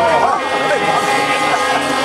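Guggenmusik band of trumpets, trombones and sousaphones playing loud, sustained brass chords, with crowd voices mixed in.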